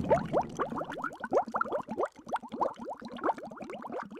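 Bubbling sound effect for an animated logo: a rapid stream of short rising blips, like bubbles rising through water, after a swell of whooshing noise.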